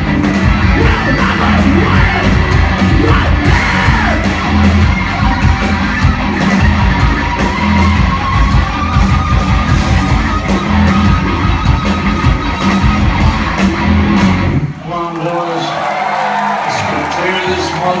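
Punk rock band playing live and loud: distorted electric guitars, bass and pounding drums, with a held high guitar line over the top. About fifteen seconds in the band stops abruptly, leaving voices yelling and whooping from the crowd.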